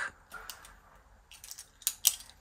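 Faint handling sounds of a fabric marking pen and hands on cotton fabric laid on a cutting mat: a few soft taps and rustles, with one sharper click near the end.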